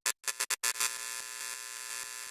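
Electronic outro sound effect: a quick run of stuttering glitch bursts, then, from under a second in, a steady buzzing hum.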